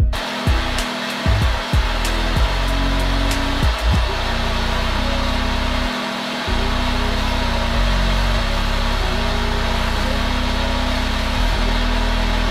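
Steady rushing hiss of a propane torch flame burning, used to heat the ends of stainless tubes for pressing button details into PVC board. Background music with low sustained notes plays under it.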